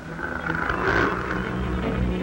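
Orchestral film score holding sustained low notes under a hazy upper layer, with the low end swelling about halfway through.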